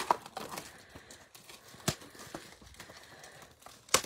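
A cardboard trading-card blaster box being torn open by hand: a string of small crinkles, rips and crackles, with one sharper snap about two seconds in.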